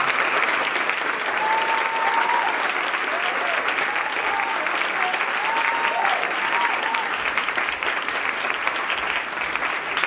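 Audience applauding, with several high cheers between about one and seven seconds in; the clapping thins toward the end.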